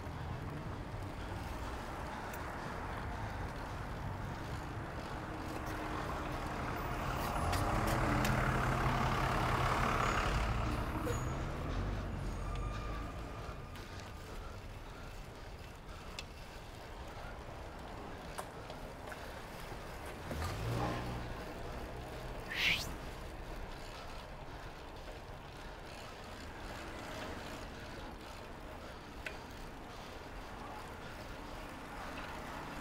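Street noise heard while riding a bicycle through city streets: steady road and wind noise, with a motor vehicle passing loudest about eight to ten seconds in and another engine swell around twenty seconds in. A brief rising squeal sounds about twenty-two seconds in.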